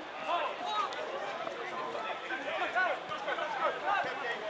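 Several voices calling out and chattering at once: players and spectators at a football match during open play, no one voice standing out.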